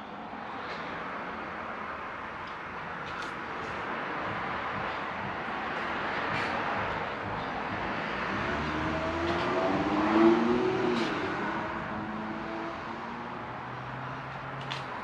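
Road traffic passing outside: vehicle noise swelling slowly to a peak about ten seconds in, with a faint engine note, then fading. A few faint clicks.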